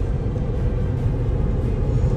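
Steady low road and engine noise inside a moving car's cabin.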